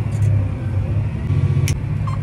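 John Deere 8235R tractor's diesel engine running, heard from inside the cab as a steady low drone, with a single sharp click near the end.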